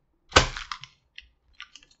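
A plastic candy wrapper being handled: one sharp crackle about a third of a second in, followed by a few lighter crinkles and small clicks.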